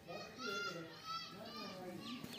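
Children's voices: three short, high-pitched calls, one after another.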